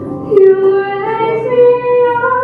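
A woman singing a slow hymn in long held notes, moving up to a new note about a second and a half in.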